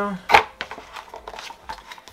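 A sharp tap about a third of a second in, then light rustling and small clicks of hands handling packaging in a cardboard motherboard box.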